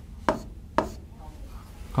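Two sharp taps of a pen against the writing board, about half a second apart.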